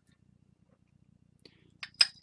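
Near silence, with a few faint, short clicks near the end as a small glass jar is picked up and handled.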